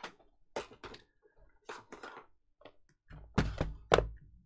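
Light clicks and taps of things being handled on a desk, then a couple of dull thumps near the end as a notebook is laid on a plastic model part and pressed down to hold it flat.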